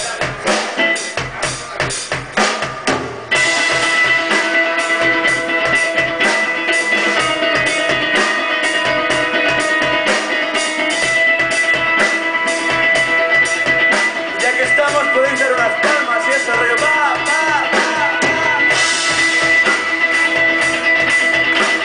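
Live rock band with electric guitars and a drum kit. For about three seconds the drums carry it with little else, then the guitars come in and the full band plays on loudly.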